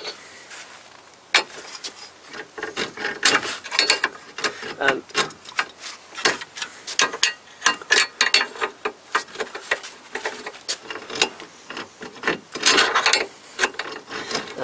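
Ratchet wrench clicking in repeated quick runs, stroke after stroke, as a bolt holding the front ball joint to the lower control arm is backed out.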